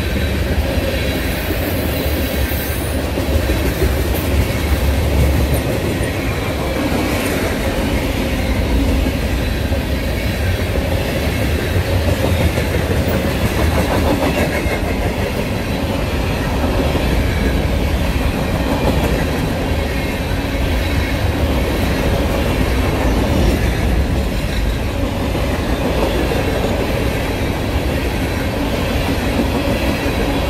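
Freight cars (tank cars and hoppers) of a long train rolling past close by, their steel wheels running on the rails in a steady, loud low rumble that does not let up.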